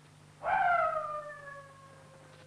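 A dog howling: one long call starting about half a second in, falling slowly in pitch as it trails off.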